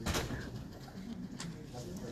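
Handling noise on the recording device's microphone, a brief rustle at the start, over low murmured voices in a meeting room.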